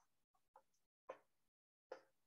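Near silence, broken by a few faint, short sounds that fade quickly.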